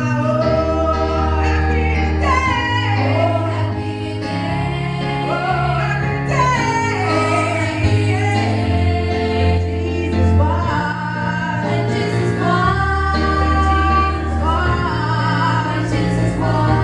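Live gospel song: a woman sings the lead in sliding, ornamented lines, backed by a group of female singers and a band, with sustained low bass notes underneath.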